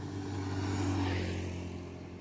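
Steady low engine hum of a road vehicle, with a faint swell of traffic noise about a second in.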